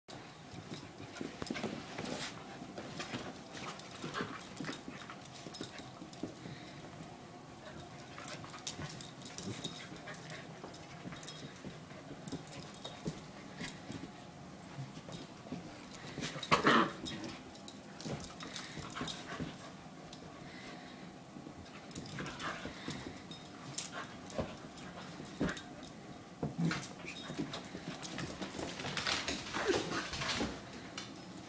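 A puppy and a larger dog play-fighting: small dog vocal sounds mixed with scuffling and scattered clicks, with one louder burst about seventeen seconds in.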